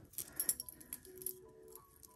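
Small metallic clicks and clinks, clustered in the first half, from a gold-tone metal mesh bracelet and its buckle clasp being handled, over faint sustained musical tones.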